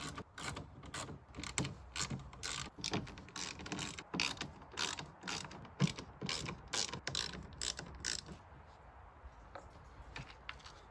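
Socket ratchet clicking in repeated short strokes, about three a second, as the fasteners holding a side skirt extension are undone from under the car; the clicking stops about eight seconds in.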